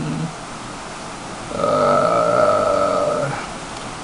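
A man's drawn-out, wordless 'uhh' while he searches a book, held for about two seconds in the middle, after a shorter held hum at the start.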